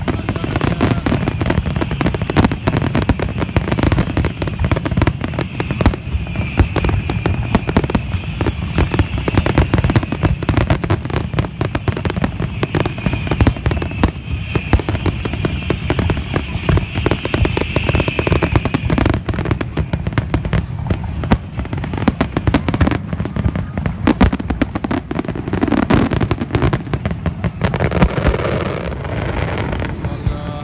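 Fireworks display: aerial shells bursting in a dense, nearly continuous run of bangs and crackles.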